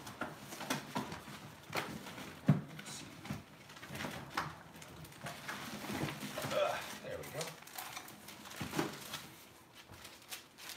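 Faint, indistinct voice with scattered light clicks and knocks of things being handled on a tabletop.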